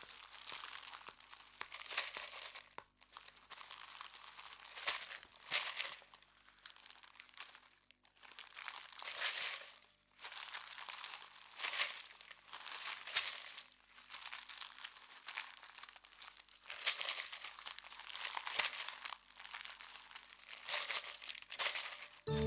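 Dry rustling and crackling in irregular bursts as hands sift and sort dried spices spread on a mat.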